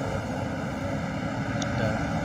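Steady low rumbling wind noise buffeting a phone's microphone in the open, with no clear pitch to it.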